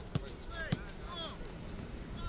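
A football kicked twice in quick succession, two sharp thuds of boot on ball a little over half a second apart, with players calling out.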